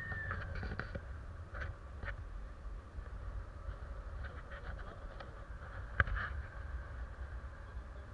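Wind buffeting an action camera's microphone in tandem paraglider flight, a steady low rumble. A faint high tone slides down in pitch near the start, small clicks come and go, and one sharp click sounds about six seconds in.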